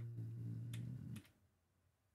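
A man's long drawn-out hesitation hum ("ummm") held on one low pitch, stopping about a second in. Two or three single computer-keyboard key clicks come over it, and then it goes quiet.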